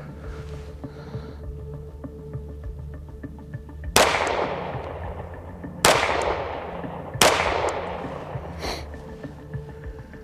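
Three pistol shots from a Strike One ERGAL, the second about two seconds after the first and the third a second and a half later, each trailing off in a long echo. A quiet music bed runs underneath.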